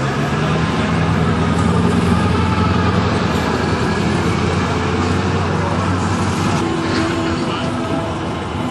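Motor vehicle engine running with a steady low hum, which gives way to general traffic noise after about three seconds.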